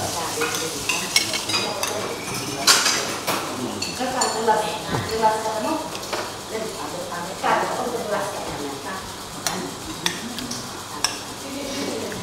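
Cutlery clinking and scraping on plates and bowls as people eat, a scatter of short sharp clicks, with low voices in the background.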